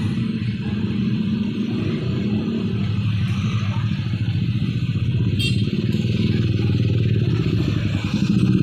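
Motorcycle and car engines running in dense, slow-moving traffic, a steady low drone close by. A brief high squeal comes about five and a half seconds in.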